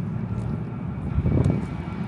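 A car driving along a city street toward the microphone, a low rumble of engine and tyres that swells just past the middle.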